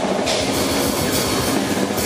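Death metal drum kit played live at a fast, dense pace, heard close from the kit: rapid bass drum strokes under a continuous wash of Sabian cymbals and the band's loud distorted sound.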